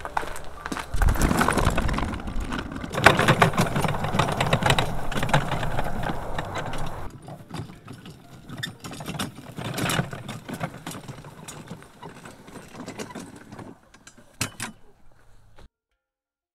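Equipment being handled and moved on foot over dry ground: irregular rattling, knocking and footsteps, busiest for the first several seconds, then sparser and fainter, cutting off suddenly just before the end.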